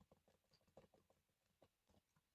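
Faint keystrokes on a computer keyboard: a quick run of soft clicks, a dozen or so over two seconds.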